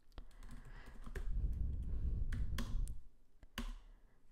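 Typing on a computer keyboard: scattered key clicks, with a low rumble under the first three seconds.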